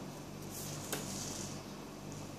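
Felt-tip sketch pen drawn across paper: a light scratchy swish from about half a second in, with a small tap near the middle, over a low steady hum.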